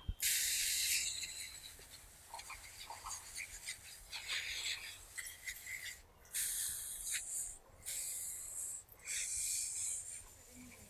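Hand pump pressure sprayer hissing as it sprays a fine mist through its wand nozzle, in about five separate bursts roughly a second long, the first the loudest.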